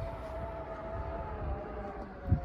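Aftermarket electric boot-lid struts on a Tesla Model 3 whining steadily as they power the boot closed, the pitch sagging a little in the second half as the lid comes down.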